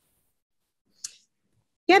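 Near silence over a video call, broken by a single brief click about a second in; a woman's voice starts right at the end.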